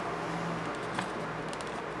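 Quiet handling of a small paper card and envelope, with a faint tap about a second in, over a steady low hum.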